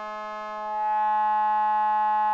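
Modular synthesizer drone sounding through a DIY Moog-style transistor ladder highpass filter: one sustained buzzy note with many overtones. About two-thirds of a second in it gets louder and brighter.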